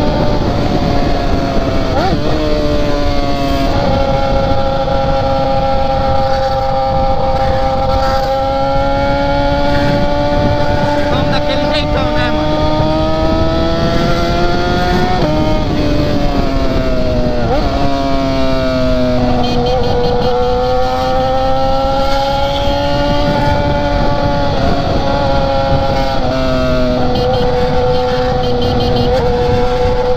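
BMW sport bike's engine running at road speed, its pitch climbing slowly and dropping at several gear changes, under heavy wind rush; the bike is still on its old exhaust.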